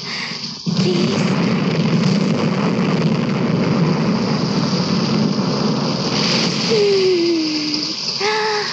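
Film soundtrack storm effect: a steady rush of wind and rain that starts suddenly about a second in, with a single falling tone near the end.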